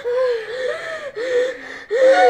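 A high-pitched voice making short wordless cries without words, each rising and then falling in pitch, several in quick succession.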